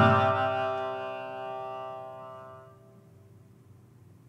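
The last struck note of a tsugaru shamisen and taiko drum ringing out together as a sustained chord that fades away over about three seconds, leaving only a faint low hum.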